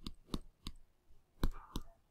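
Keys of a scientific calculator being pressed to enter a calculation: about five short, sharp clicks at uneven spacing.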